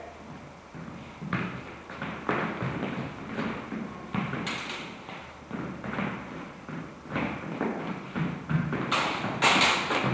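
Footfalls and thuds of two fencers moving on a hard floor during a longsword bout. Near the end come a few sharp clashes of steel practice blades as the exchange ends in a cut to the head.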